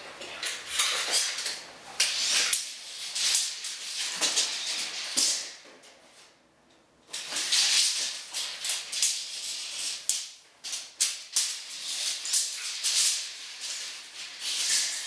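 Steel tape measure blade being pulled out and dragged across a laminate floor, making rattly, scratchy scraping strokes in runs, with a short pause partway through.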